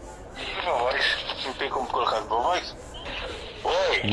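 Quieter speech, voices coming over a phone call, ending with a short spoken 'oi?' near the end.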